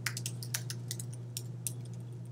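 Typing on a computer keyboard: a quick run of irregular keystrokes over a steady low hum.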